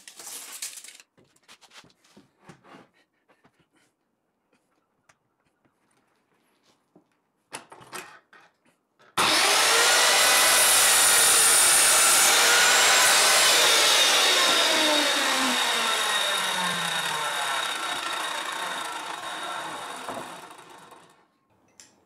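A few light knocks and rustles, then a mitre saw starts abruptly about nine seconds in and cuts through a length of CLS softwood. The motor is then let go and winds down with a falling whine, fading out over about seven seconds.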